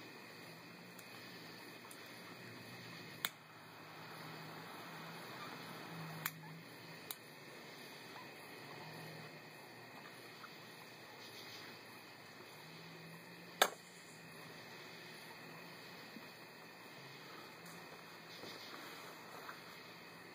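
Faint steady background hiss broken by a few sharp isolated clicks, the loudest a little past the middle.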